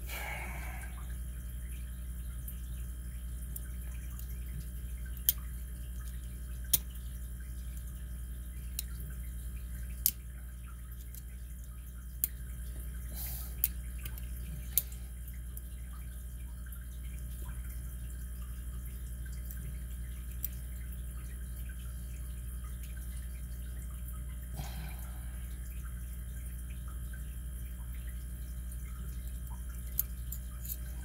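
Small sharp metallic clicks, a handful spaced a second or two apart, as a pick works at a lock cylinder's bulletproof clip to pry it off. A steady low hum runs underneath.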